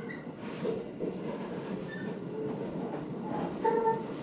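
Electric train pulling out of a station, heard from inside the passenger car: running noise of the motors and wheels slowly grows louder as it gathers speed, with a few brief whining tones.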